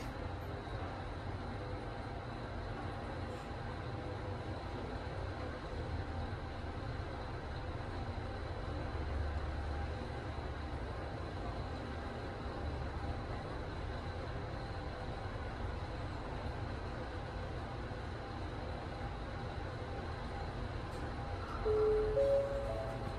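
OTIS ACD4MR passenger elevator car travelling upward, heard from inside the car as a steady low rumble and hum. Near the end a short chime sounds as the car arrives at the floor.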